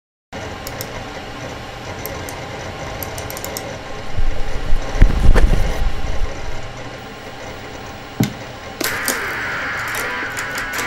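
Steady hiss with faint scattered clicks, then a loud, low rumbling stretch of about two seconds in the middle and a sharp click a little after eight seconds. Electric guitar playing starts near the end.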